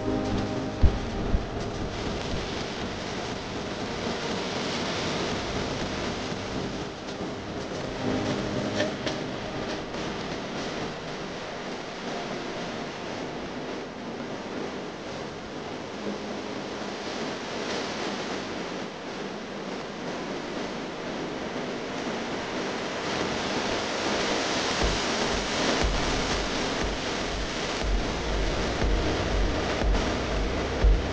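A steady, noisy background hiss with faint music, its notes clearest at the start, and low rumbling bumps near the end.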